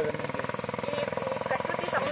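A woman speaking, with a steady low rhythmic throb of an idling engine running underneath her voice.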